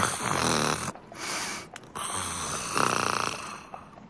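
A person snoring in sleep: two long snores, each followed by a breathy out-breath.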